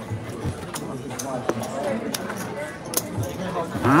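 Casino chips clicking as the dealer sets payout chips onto the bets: a string of separate sharp clicks over faint background chatter.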